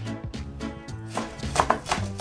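A chef's knife chops fresh parsley on a bamboo cutting board: a few quick strokes in the second half, over background music.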